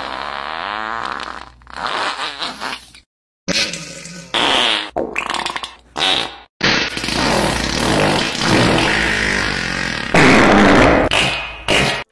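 A string of cartoon fart sound effects of varying length and pitch, with a short break about three seconds in and one long drawn-out fart through the second half.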